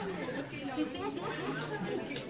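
Several people talking over one another in a room, low, indistinct chatter.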